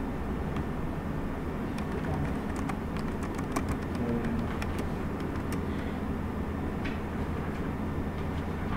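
Steady low room hum, with a scatter of faint clicks and rustles in the middle seconds as paper pages are moved and turned under a document camera.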